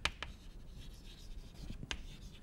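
Chalk writing on a chalkboard: faint scratching of the strokes, with sharp taps as the chalk strikes the board, two at the start and one near the end.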